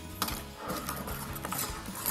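Miniature metal toy shopping cart rattling and clicking as its small wheels roll across a wooden tabletop, pushed along by a small parrot.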